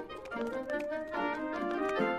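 Instrumental background music: a short cartoon score cue of stepping, held notes with light plucked or struck accents.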